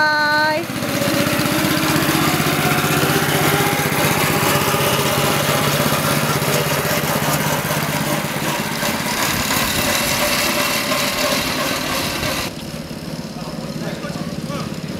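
Go-kart's small petrol engine running steadily as the kart drives along. About twelve and a half seconds in it drops suddenly to a quieter, more distant drone.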